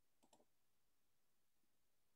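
Near silence, with two very faint clicks about a quarter of a second in.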